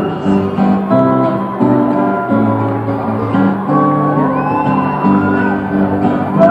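Live solo acoustic guitar picked in a steady run of notes, heard through the echo of a large arena, with a voice rising and falling over it at times.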